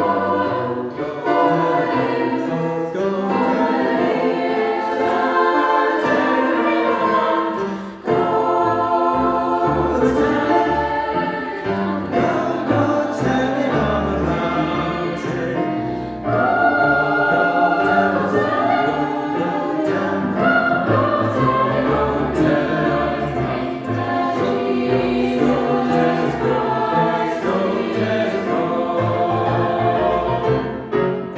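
Mixed-voice youth choir singing a traditional spiritual in soprano, alto, tenor and bass parts, with held chords and two brief breaths between phrases, about eight and sixteen seconds in.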